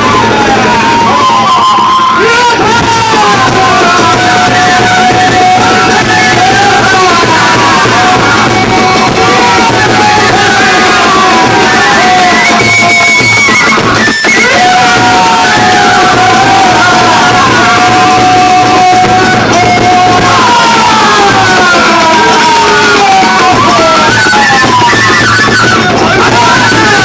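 Kagura ensemble music: a large drum and hand cymbals playing steadily under a high bamboo-flute melody whose notes are held long and bend in pitch.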